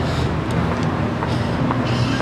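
Street traffic noise: a steady rumble of cars and vans on a busy city road.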